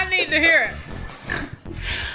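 A man laughing hard: high-pitched laughter that bends up and down, loudest in the first second, over background music.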